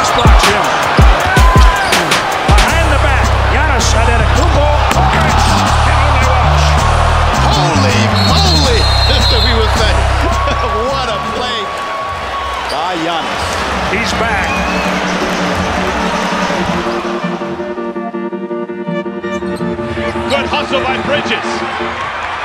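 Basketball game sound: a ball bouncing and sneakers squeaking on a hardwood court over arena crowd noise, laid under background music with a heavy stepping bass line. About three quarters of the way through the crowd and court sounds fade, leaving mostly the music.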